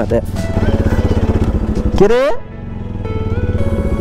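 Bajaj Pulsar NS200 motorcycle's single-cylinder engine running at low speed, under a background song with a sung line about two seconds in.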